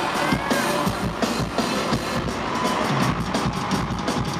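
Live band music through a stadium sound system, drums and heavy bass coming in at the start, over a cheering crowd heard from within the audience.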